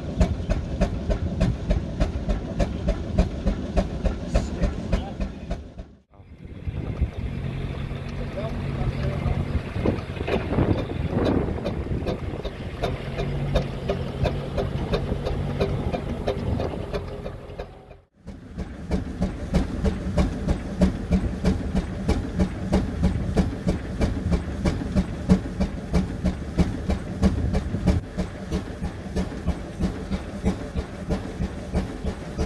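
Marshall and Sons 10 hp portable steam engine running, its beat coming about three times a second. The sound drops out briefly twice; between the dropouts it runs softer and steadier.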